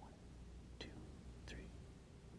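Near silence: faint room tone with two soft, faint clicks about three quarters of a second apart.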